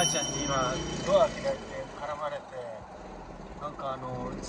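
A man talking in Japanese inside a car's cabin. A short, high chime rings right at the start and fades within about half a second.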